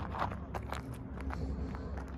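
Several footsteps on dry grass and dirt, with low humming underneath.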